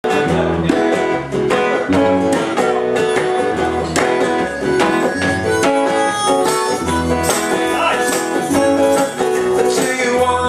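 Live blues band playing an instrumental intro: a plucked upright double bass, a strummed archtop guitar and a harmonica played into a microphone.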